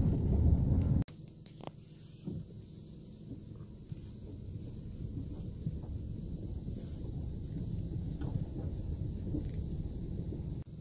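Low, steady rumble of a vehicle driving slowly on a rough gravel forest track, heard from inside the cab, with a few faint knocks from the bumps. About a second in the sound drops abruptly to a quieter level, then slowly builds again.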